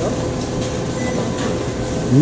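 Steady hum and rush of fast-food kitchen equipment and ventilation, with a faint steady tone running through it and a brief faint higher beep about halfway.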